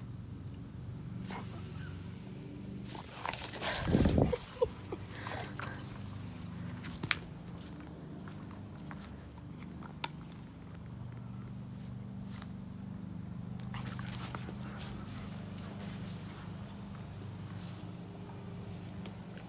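A German shepherd moving about on grass, with a loud burst of dog sounds about three to four seconds in, then a few sharp clicks and some rustling later on, over a steady low hum.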